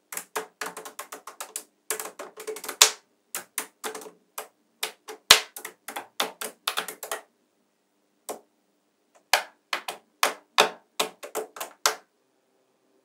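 Small magnetic metal balls clicking as stacks of them are pressed and snapped onto a flat sheet of balls: quick runs of sharp clicks, with a pause of about two seconds past the middle before the clicking resumes.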